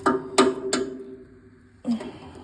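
Three quick knocks about a third of a second apart, each leaving a steady ringing tone that fades away over about a second.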